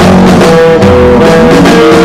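Loud lo-fi rock music: guitar over bass, with held notes, one of which slides upward in pitch about a second and a half in.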